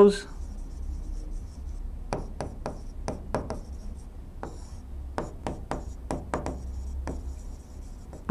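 Pen strokes on an interactive display screen as words are handwritten: a run of short scratchy strokes and taps, several a second, beginning about two seconds in.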